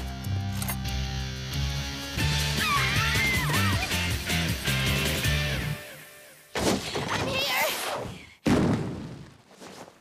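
Cartoon background music that drops out before six seconds in, followed by two loud sudden impacts, about two seconds apart, each trailing off over about a second: a classroom door being flung open.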